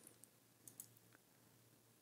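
Near silence with two faint computer mouse clicks a little under a second in.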